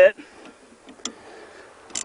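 Two small sharp clicks, about a second apart, from the hardware of a waterski boom clamp being loosened by hand.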